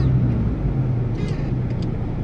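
Car engine and road noise heard from inside the cabin while driving: a steady low hum.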